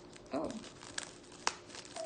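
Paper cake collar crinkling as fingers work it loose from the side of the cake, with two sharp snaps about a second and a second and a half in.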